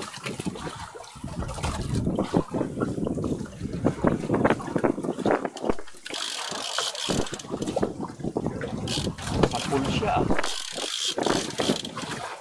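Irregular knocking, clicking and rattling from hands working gear on a wooden boat, with a few short hissing, rushing stretches in the middle and near the end.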